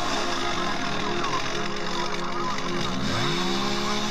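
Gas chainsaw running at low revs, then throttled up about three seconds in and held at full revs as it cuts into a felled log, with music playing over it.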